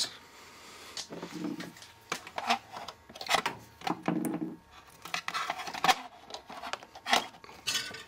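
Handling clatter of an old microwave oven being readied: a string of clicks, knocks and scraping as its door is opened and its power cord is handled and the plug pushed into a wall outlet.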